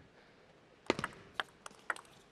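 Celluloid-type table tennis ball clicking off paddles and the table during a serve and return: about five short, sharp clicks in quick succession through the second half.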